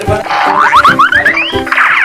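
Background music with a comic cartoon sound effect laid over it: a quick run of about six short upward-sliding tones, each starting higher than the last, followed by a rising trill.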